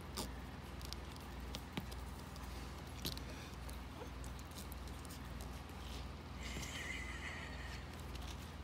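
Chihuahua puppy moving about inside a soft mesh pet carrier: a few light clicks and scrapes over a steady low hum, with a brief high-pitched squeak about six and a half seconds in.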